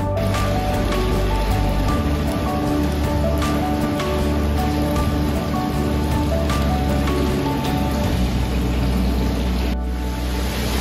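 Background music with slow held notes, over the steady splashing of hot-spring water pouring from a spout into a tiled bath.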